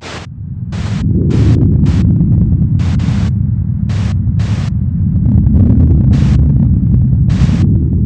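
Logo sting sound effect: a loud, deep rumble that swells up over the first second, broken by about nine short, uneven bursts of static hiss like a glitching signal.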